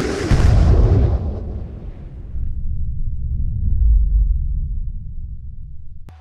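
Cinematic boom from an animated intro's logo reveal: a loud deep hit whose hiss fades over about two seconds, leaving a low rumble that swells once more and dies away.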